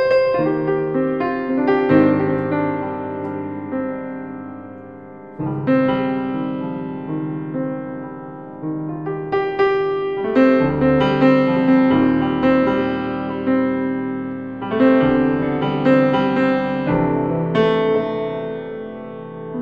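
Acoustic grand piano played solo in an impressionistic improvisation of ringing chords that die away. The playing eases into a lull about five seconds in and grows busier, with closely spaced strikes, from about ten seconds on.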